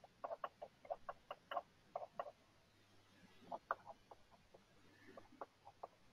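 A faint, irregular run of short clicks or clucks, several a second in uneven clusters, with a brief pause in the middle.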